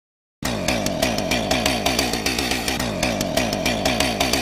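Chainsaw running hard, starting abruptly about half a second in after a moment of silence: a loud, steady buzz with a fast, even rattle.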